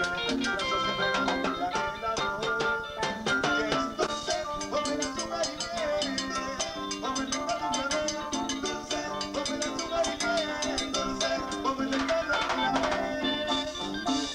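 Live chicha (Peruvian cumbia) band playing: an electric guitar melody over a steady, dense percussion beat and bass.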